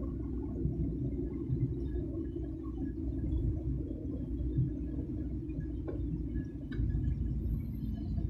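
Low, steady rumble of a car driving slowly along a street, its engine and tyre noise heard from inside the vehicle.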